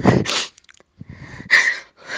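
A woman crying: two loud breathy sobs, at the start and about a second and a half in, with a fainter gasping breath between.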